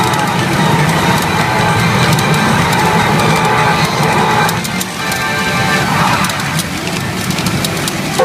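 Sound of a CRA Yasei no Oukoku SUN N-K pachinko machine: loud in-game music and effects for a hippo's big-sneeze warning presentation, with a brief drop about halfway through.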